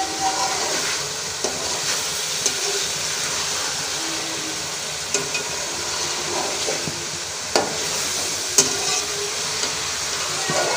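Chopped tomatoes and green peas sizzling in oil in an aluminium kadai while a slotted metal spatula stirs them, scraping and knocking on the pan now and then. The sharpest knock comes near the end.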